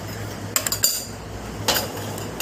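A steel spoon clinks against a stainless-steel bowl as the bowl is handled. There is a quick cluster of light metallic clinks about half a second in and another pair near the end.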